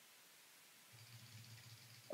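Near silence: room tone, with a faint low hum from about a second in.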